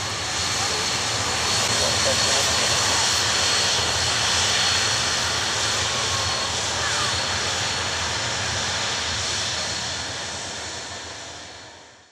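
Avro RJ100 airliner taxiing past at close range, its four Honeywell LF507 turbofan engines running at taxi power: a broad rushing noise with a thin, steady high whine on top. The sound holds steady, then fades out over the last two seconds.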